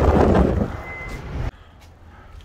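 Wind and road noise from a moving car, loud at first and dropping about half a second in. A short single high beep follows about a second in, and then the sound cuts off suddenly.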